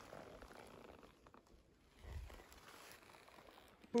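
Quiet outdoor background with little to hear, and a soft low bump about two seconds in.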